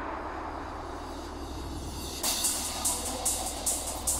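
Electronic trance music. A fading noise sweep sits over a steady low bass, and about two seconds in a bright, crisp percussion pattern comes in on a regular beat, roughly two and a half hits a second.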